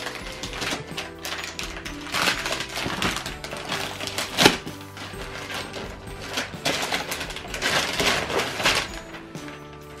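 Wrapping paper being torn off a present, crinkling and ripping in a string of quick tears, the loudest about four and a half seconds in. Background music with steady held notes plays underneath.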